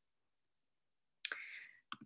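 Near silence, then two sharp computer mouse clicks, the first about a second and a quarter in with a short faint hiss after it, the second near the end, as the presentation slides are clicked through.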